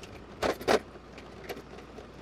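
A road vehicle running at low speed as a low steady hum, with two short rattling noise bursts about half a second in.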